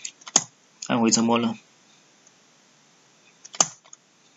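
Computer keyboard keystrokes: a quick cluster of key presses at the start and one sharp press near the end, as Enter is pressed to accept the blank MySQL root-password prompt. A brief voiced sound comes about a second in.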